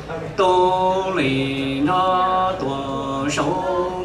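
A man chanting Hmong xaiv verse into a microphone over a PA system: long held notes, each phrase dropping to a lower held note before a short breath.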